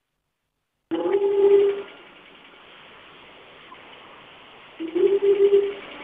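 A telephone line heard through a broadcast feed: a steady low call-progress tone sounds twice, about four seconds apart, with line hiss between. It is the kind of ringing tone heard while a phone-in call is waiting to connect.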